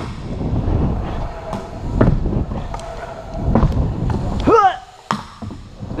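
Pro scooter wheels rolling over a Skatelite-sheeted wooden pump track: a rough rumble that rises and falls as the rider pumps the rollers, broken by several sharp knocks of wheels and deck striking the ramp surface.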